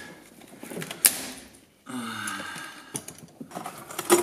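Pliers working a plastic switch panel free of its wiring. There is one sharp snap about a second in, then faint clicks and rustling of plastic and wires.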